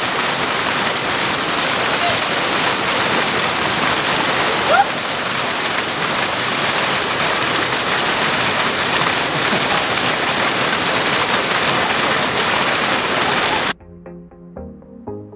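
Small waterfall pouring into a rock pool: a loud, steady rush of falling water, with a brief voice exclamation about five seconds in. It cuts off abruptly just before the end, giving way to music.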